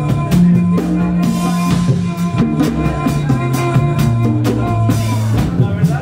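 Live band music: drum kit and tabla playing a busy rhythm over long, held low notes from a bowed string instrument or bass.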